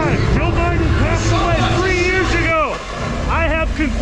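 A man shouting in a strained, high-pitched voice, the pitch sweeping up and down, over a steady low rumble.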